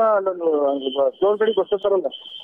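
Speech: a voice talks steadily throughout, sounding narrow and radio-like. A thin, steady high tone sits behind it from a little before the middle.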